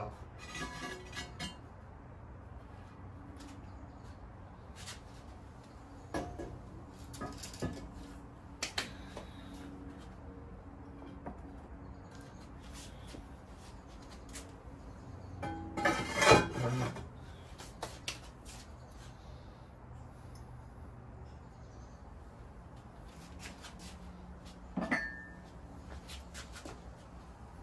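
Ceramic clatter from unloading a kiln: the halves of a cracked kiln shelf and glazed stoneware pots are lifted and set down, with scattered knocks and clinks. The loudest clatter comes a little past the middle, and a short ringing clink comes near the end.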